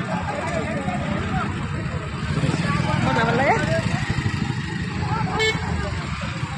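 Bystanders' voices talking at a roadside over a steady low rumble of traffic, with a short vehicle horn toot near the end.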